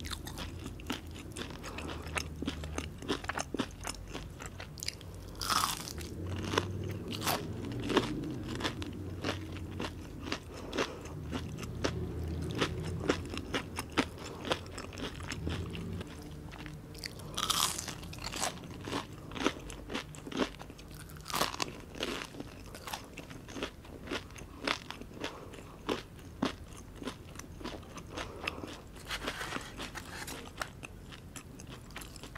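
Biting and chewing crisp, crumb-coated mozzarella onion rings: many sharp crunches come one after another, over the softer sound of chewing.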